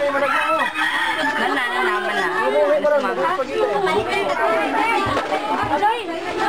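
Many children's voices chattering and laughing at once, overlapping without a break.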